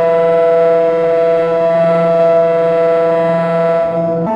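Ciat-Lonbarde Tetrax analog synthesizer played through a Chase Bliss Mood MkII pedal, holding one loud, steady drone tone rich in overtones with a slight shimmer.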